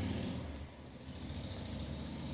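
A steady low hum with a faint hiss.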